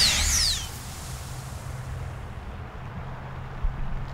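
Sci-fi energy-ray sound effect for a man being disintegrated. High electronic whines sweep up and down and fade out within the first second. A hiss dies away by about two and a half seconds in, over a low steady hum.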